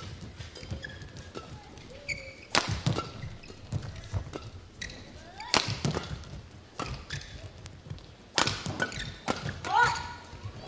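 Badminton rally: several sharp racket strikes on the shuttlecock a few seconds apart, with short squeaks of court shoes on the mat between them.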